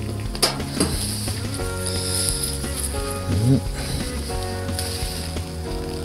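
Background music with long held chords, over which come a few short rustles and scrapes of soil and leaves as a parsnip is worked loose and pulled out of a pot of soil.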